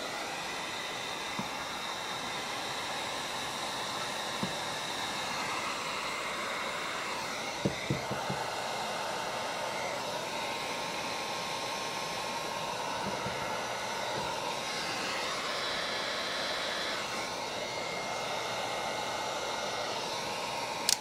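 Electric heat gun running steadily, blowing hot air onto a heat-shrinkable blade terminal on a wire to shrink and seal it. A few light clicks about eight seconds in.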